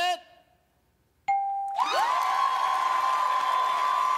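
Game-show answer-reveal ding, a short steady tone about a second in, marking a scoring answer. It is followed by a crowd cheering, with one voice holding a long high shout.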